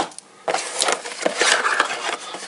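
A cardboard shipping box being handled and rubbed by hands reaching inside, a dry scraping rustle with a few light knocks.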